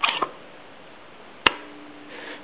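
Soft handling rustle from a supercharger bypass valve being turned over in the hands, then one sharp click about one and a half seconds in.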